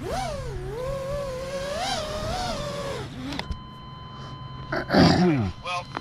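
A man's voice holds one long, wavering, sung-out note for about three seconds. Then comes a click and a thin, steady high tone, and near the end a short, loud groan falling in pitch.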